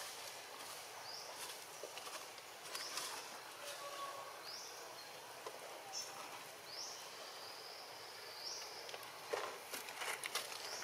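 Outdoor ambience: a steady high hiss of insects, with a short high rising chirp repeated every second or two, and a few faint clicks.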